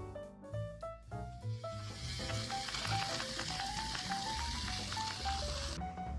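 Background music with a light melody, and from about a second and a half in, a vegan egg and vegetable scramble sizzling in a frying pan; the sizzle cuts off just before the end.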